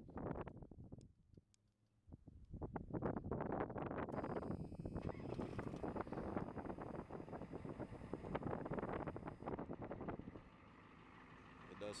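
Ford 6.9-litre diesel V8 starting about two seconds in and running loudly, with wind on the microphone. Near the end it settles to a quieter, steady run.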